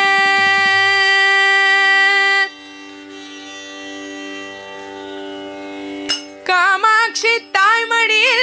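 Female voice singing a devotional bhajan in Carnatic style. A long held note breaks off about two and a half seconds in, leaving a much quieter steady accompanying drone. The voice comes back in the last two seconds with ornamented, sliding phrases.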